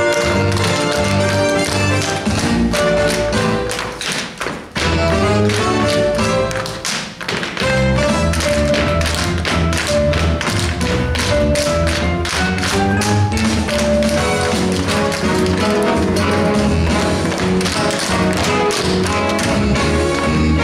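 A chorus tap-dancing on a stage floor, the tap shoes striking in quick rhythm over an upbeat show-tune accompaniment. The music thins briefly twice in the first eight seconds, then carries on.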